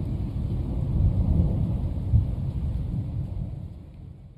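Rolling thunder with rain, a low rumble that fades out over the last second.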